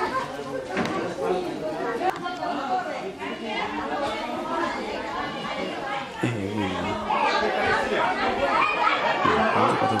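Several people talking over one another, indistinct chatter with no clear single voice, growing louder and busier from about six seconds in.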